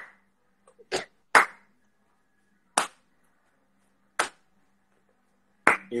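Hand claps: about five sharp, separate claps spaced roughly a second to a second and a half apart, clapped along to lead into a song.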